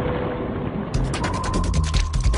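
Cartoon sound effect of a machine running: a rapid ratcheting clatter of about ten clicks a second over a low rumble, starting about a second in.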